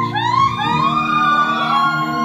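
A woman singing live through a microphone, sliding up through a quick run of short rising notes into a long held high note that dips slightly at the end, over a steady sustained accompaniment.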